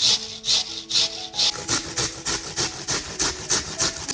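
Onion being grated on a stainless steel box grater: rhythmic rasping strokes, about two a second at first and quickening to about three a second partway through. Soft background music with held notes plays underneath.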